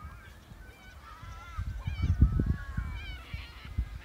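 Wind buffeting the microphone in gusts, loudest about halfway through, over faint wavering high-pitched tones.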